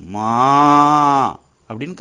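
A single long moo, like a cow or calf calling "ammaa", held steady for over a second and dropping in pitch as it ends.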